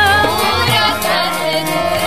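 Gurbani kirtan: Sikh devotional hymn singing with musical accompaniment. A sung phrase begins just after a held note breaks off.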